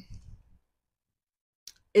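A mostly quiet pause. A short low rumble comes from a clip-on microphone held in the fingers, then a single faint click is heard just before speech resumes at the end.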